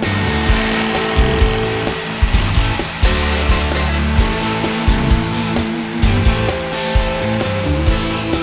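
Bosch GSA 1100 E corded reciprocating saw cutting through a log, its motor whine rising sharply as it starts and falling away as it stops near the end. Rock music plays over it.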